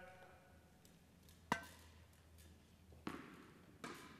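Tennis ball struck sharply by a racket about a second and a half in, ringing briefly in a large hall, then a softer thump and a second sharp racket hit just before the end as the ball is returned.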